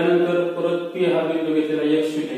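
A voice chanting or reciting in a drawn-out sing-song, holding level pitches that step from note to note with short breaks.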